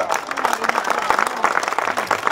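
Crowd applauding: many people clapping at once in a steady, dense patter.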